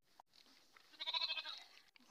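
A goat bleating once, a short quavering call about a second in.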